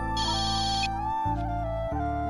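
Mobile phone ringing with a trilling electronic ringtone over sustained background music. One burst of the ring sounds, ending about a second in.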